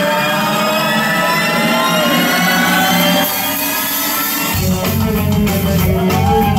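Live rock band starting a song: held, layered instrument tones with a note that bends up and back down, then bass and drums come in about four and a half seconds in.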